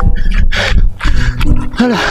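A person's voice crying out loudly: harsh, breathy exclamations about half a second in, then a drawn-out wavering cry near the end.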